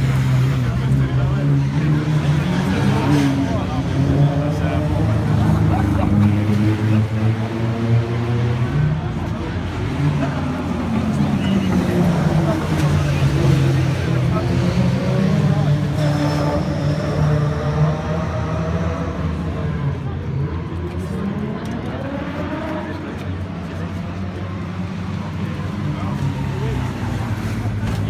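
Vintage racing car engine idling, its revs rising and falling slowly a couple of times, with voices around it.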